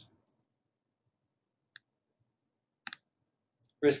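Computer mouse button clicking in near silence: one faint click a little under two seconds in, then a sharper double click near three seconds.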